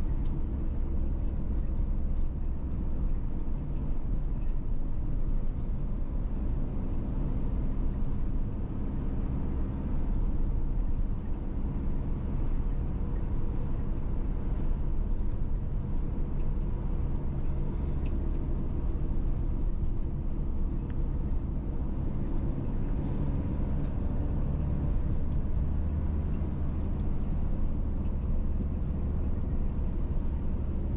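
Steady low drone of engine and tyre noise from inside a vehicle cruising along a road at constant speed, with a faint steady hum above the rumble.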